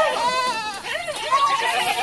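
Several goats bleating in their pen, their wavering calls overlapping at different pitches, with a brief lull a little under a second in.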